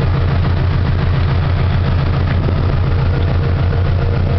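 Subaru flat-four engine idling steadily at about 900 rpm, heard from inside the car's cabin, with the air-conditioning compressor engaged and a steady rush of air from the vents.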